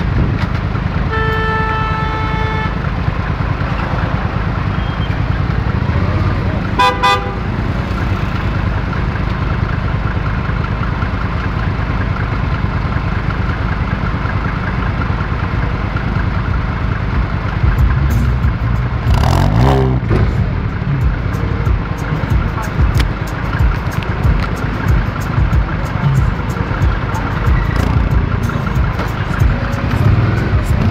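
Low, steady rumble of a Mini Cooper S's aftermarket exhaust and the surrounding city traffic close by. A car horn sounds for about a second and a half near the start, and a second short toot comes about seven seconds in. An engine note rises and falls briefly about twenty seconds in, and frequent crackles on the microphone run through the second half.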